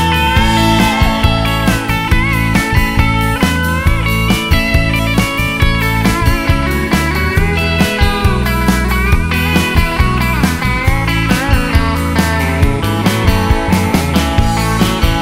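Rock band playing an instrumental passage: guitar lines over bass and a steady drum beat, with no singing.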